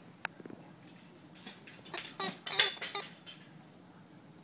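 Hard plastic baby toy clattering and clicking as a baby shakes and knocks it about: one click just after the start, then a quick run of sharp clatters in the middle.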